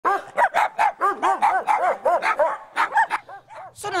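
Small mixed-breed dogs barking rapidly, short sharp barks at about four a second, stopping shortly before the end.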